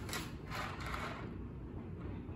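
Faint, irregular rustling and handling noise as a plastic bag is rummaged.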